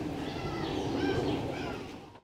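Birds calling in short chirps over steady outdoor background noise, fading down near the end.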